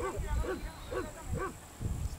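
A dog whining in short, repeated cries that rise and fall in pitch, about two a second.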